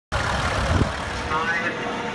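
Vintage tractor engine running as the tractor is driven slowly across grass, with a voice heard briefly about halfway through.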